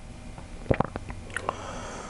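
A pause in a man's speech filled with his soft mouth clicks and breath: a quick cluster of small clicks just before the middle and two more a little later.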